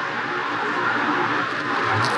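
Steady background hiss with no distinct events, the same noise bed that runs under the narration.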